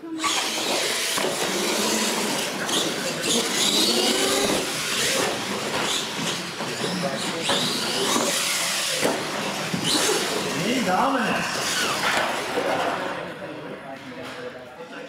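R/C monster trucks racing across a concrete floor: a loud rush of motor whine and tyre noise that starts abruptly and eases near the end, with voices shouting over it.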